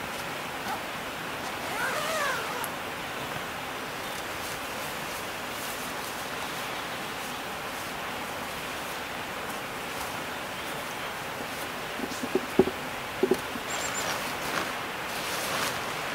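Steady hiss of outdoor forest ambience, with a short bird call rising then falling about two seconds in. Near the end come a few sharp clicks and then rustling of tent fabric and gear as the tent is opened and things inside are handled.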